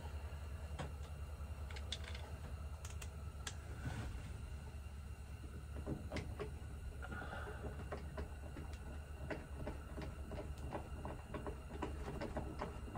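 Scattered light clicks and taps of a plastic grab handle and its fittings being handled and pressed up against a van's headliner, over a steady low hum.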